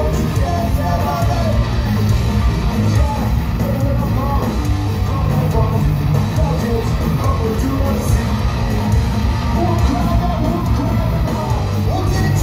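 Punk rock band playing live at full volume: electric guitars, bass and drums, with a sung lead vocal over them.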